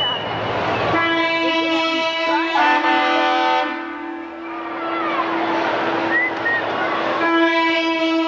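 Semi truck's air horn sounding two long blasts, each a steady chord-like tone. The first runs from about a second in to past the middle, and the second starts near the end.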